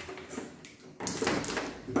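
Handling noise from the heater's power cord being moved against its metal back panel: a sudden scraping rustle that starts about a second in and runs for most of a second.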